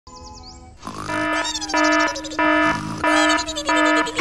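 Background music: after a faint sliding whistle in the first second, repeated held chords begin about a second in, about one every two-thirds of a second, with sliding tones above them.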